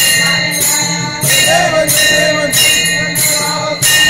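Hanging brass temple bell rung by hand, struck over and over about every two-thirds of a second, with small brass hand cymbals (taal) clashing along. A voice sings briefly near the middle.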